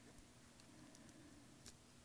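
Near silence, with two faint clicks, one just after the start and one near the end: a flat-blade screwdriver touching the screw on a frost-proof faucet stem as it is fitted.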